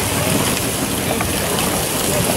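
Bacon-wrapped hot dogs sizzling on a street cart's flat-top griddle: a steady hiss.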